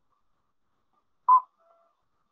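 A single short high blip, loud and about a fifth of a second long, a little over a second in, followed by a much fainter brief tone, over an otherwise silent video-call line.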